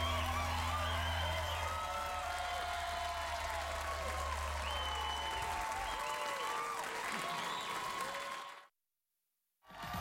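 Studio audience applauding and cheering, with whoops, as the band's last low note rings under it for the first half. It all fades out to silence shortly before the end.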